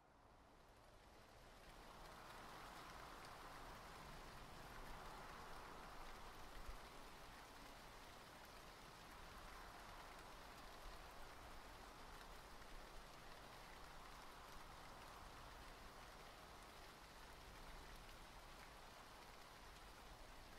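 Faint, steady rain ambience, fading in over the first two seconds.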